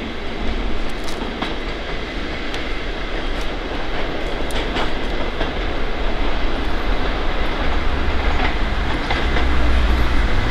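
A convoy of four Class 43 HST diesel power cars running under their own power. Engine rumble and wheel noise carry on throughout, with scattered sharp clicks of the wheels over rail joints and points. The low rumble grows louder in the last couple of seconds.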